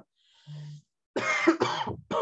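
A man coughs: a short low hum about half a second in, then a harsh cough in two quick parts from just over a second in.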